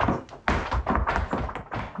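Flamenco footwork: several dancers' shoes stamping and tapping on a wooden floor in a quick, irregular run of sharp strikes.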